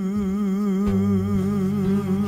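A male singer holds a long final note with a steady vibrato over an acoustic guitar. A low guitar note comes in underneath about a second in.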